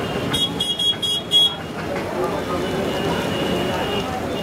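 Busy street ambience of voices and traffic, with a horn beeping four times in quick succession in the first second and a half.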